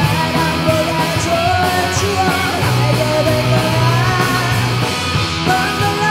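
A live rock band playing loudly: electric guitars, bass guitar and drums, with a bending melodic lead line on top.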